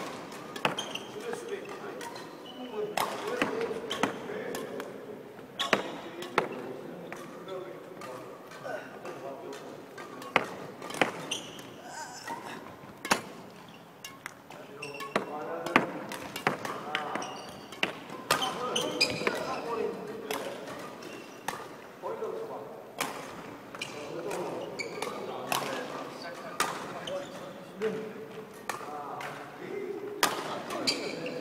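Badminton rackets striking shuttlecocks in a feeding drill: sharp hits about every one to two seconds, echoing in a large hall, with voices in the background.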